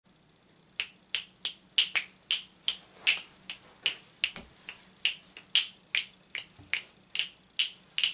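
Fingers snapping, a quick run of sharp snaps at about three a second that starts about a second in, slightly uneven in spacing and loudness.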